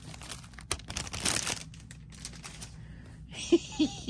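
Small clear plastic zip-lock bags of beads crinkling as they are handled and spread out, with a couple of short vocal sounds near the end.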